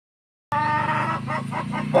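A rooster clucking in a quick run of short calls over a steady low hum, starting about half a second in, with one louder call at the end.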